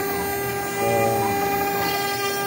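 CNC router spindle running with a steady high whine while a 2 mm ball-nose bit makes a finishing pass through a pine board.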